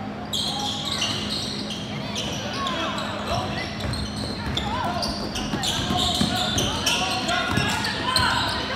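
Basketball shoes squeaking in many short, irregular chirps on a tiled indoor court as players run, with a basketball bouncing and voices calling out.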